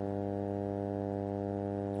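Steady electrical mains hum from a public-address microphone system, a buzzing stack of even tones that does not change.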